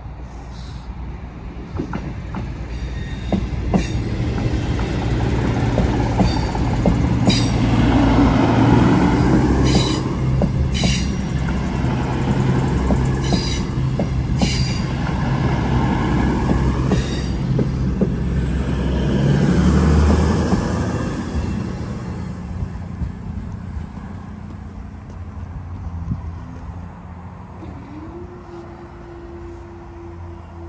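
CrossCountry diesel multiple unit passing at speed. The engine hum and wheel-on-rail noise build from a couple of seconds in, stay loud through the middle with a few sharp clacks and a second peak at about twenty seconds, then fade away.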